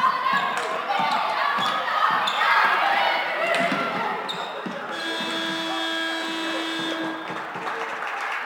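Floorball play in a large sports hall: players' shouts over the clack of the plastic ball and sticks on the floor. About five seconds in, a steady horn sounds for about two and a half seconds.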